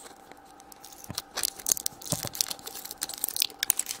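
Printed plastic wrapper being torn and peeled off a plastic surprise egg, a dense run of crinkling and crackling that starts about a second and a half in.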